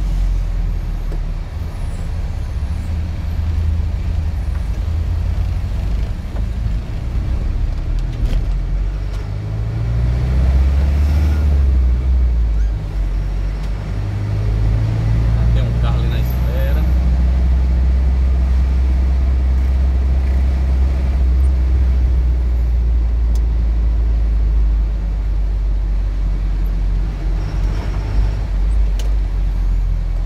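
Truck engine running, heard from inside the cab while driving: a steady low drone whose pitch climbs twice, about a third and about half of the way through, as the engine speeds up.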